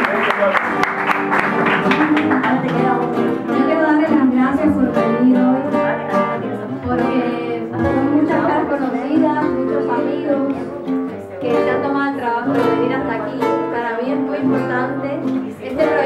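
Applause fading over the first couple of seconds, then an acoustic guitar playing a Cuban feeling-style accompaniment with a woman's voice at the microphone over it.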